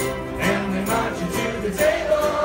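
A large ukulele ensemble strumming together with group singing, the strums falling in a steady rhythm of about two a second.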